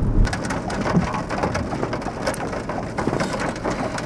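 Scattered raindrops ticking irregularly on a car's windshield, heard from inside the car. A low road rumble cuts off just after the start.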